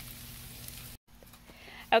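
Whitefish fillets sizzling on the grates of a hot gas grill, a steady faint hiss that cuts off abruptly about a second in.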